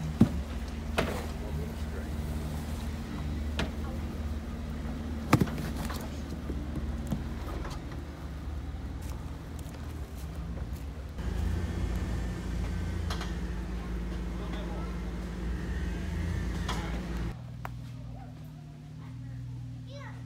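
Jeep Wrangler's engine running low and steady as it crawls down a rocky trail, with a few sharp knocks in the first several seconds. The engine sound grows louder about eleven seconds in.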